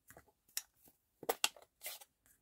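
Light clicks and taps of a clear acrylic stamp block and a plastic ink pad being handled on a craft desk, five or six in all, the sharpest pair a little past the middle.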